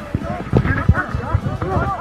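A group of men shouting and yelling over one another in a physical scuffle, with several dull thumps mixed in.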